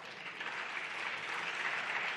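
Applause from deputies in a parliamentary chamber, building slowly.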